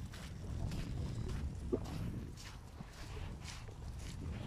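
Footsteps crunching on a dirt track at a walking pace, over a low rumble of wind and handling noise on the microphone, with a short pitched sound a little under two seconds in.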